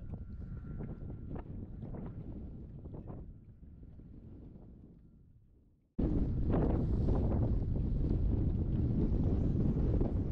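Wind buffeting the microphone on an open boat deck, a low rumbling noise. It fades away almost to silence over the first six seconds, then cuts back in suddenly and louder.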